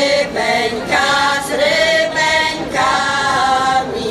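Women's folk choir singing a Polish folk song unaccompanied, several voices together on a run of held notes.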